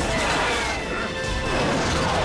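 Animated action-film soundtrack: music under dense crashing and jet-flight sound effects, at a steady loud level.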